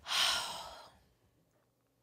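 A woman sighs once: a breathy exhale of about a second that fades away.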